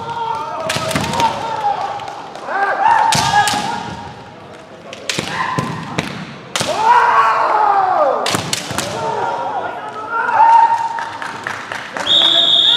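Kendo fighters' kiai shouts, cut by several sharp cracks of bamboo shinai strikes and foot stamps on the hall floor. The loudest is one long shout that rises and falls about seven seconds in.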